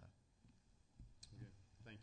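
Near silence: room tone with a couple of faint, short clicks, then a man starting to say "thank you" near the end.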